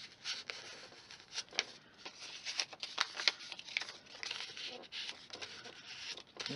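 A scrap of paper rubbing and scraping over cardstock in short, irregular strokes, wiping off a misplaced smear of Tombow liquid glue.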